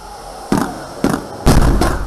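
Launch of a Hwasong-18 solid-fuel ICBM, ejected from its launcher by a cold-launch gas charge: sharp bangs about half a second and a second in, then a louder blast about a second and a half in that carries on as a loud, deep rushing noise.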